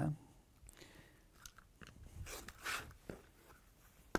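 Rotary cutter rolling through black cotton fabric along an acrylic ruler on a cutting mat: a few soft, crunchy cutting strokes about one and a half and two to three seconds in, with a light click near the end.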